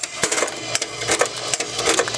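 Automatic wire cutter running, chopping 22-gauge brass reed wire into short lengths with a rapid run of sharp clicks, several a second. The cut pieces drop into a cardboard box.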